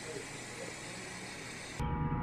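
A steady, even hiss with no distinct knocks or beeps. About two seconds in it cuts off abruptly and background music begins.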